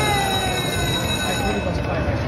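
Aristocrat Lightning Link High Stakes slot machine sounding an electronic tone that slides slowly down in pitch while the reels spin, fading near the end, over casino crowd noise.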